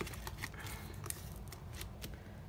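Light rustling and a scattering of small, sharp clicks as a paper cash envelope is handled in a clear plastic binder pocket.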